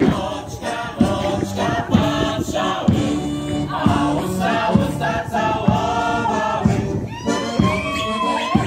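Mixed choir of men and women singing a Polish folk song together, accompanied by an accordion, with a drum beating a steady pulse under the voices.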